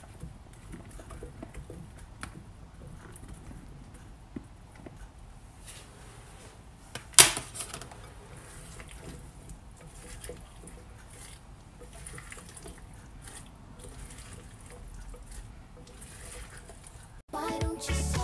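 Faint handling of food in a glass mixing bowl: chicken pieces dropped in among the shredded salad, with soft rustles and small clicks and one sharp knock about seven seconds in. Music starts just before the end.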